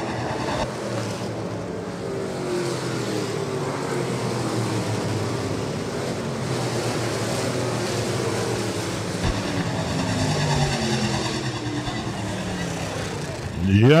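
Several USRA stock cars' V8 engines running on a dirt oval, with overlapping engine notes rising and falling in pitch as the cars pass.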